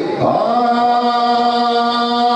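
A man's voice chanting a naat into a microphone, sliding up and then holding one long sustained note from about a third of a second in.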